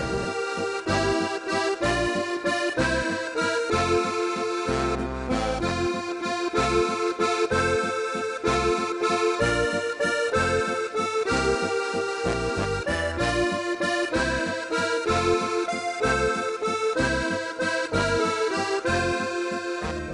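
Background music led by an accordion, playing a lively tune in short, regular notes over a steady bass beat.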